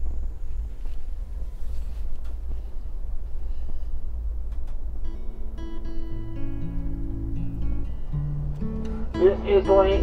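Steady low rumble of a moving passenger train heard from inside the coach car. About halfway through, plucked acoustic guitar music comes in over it.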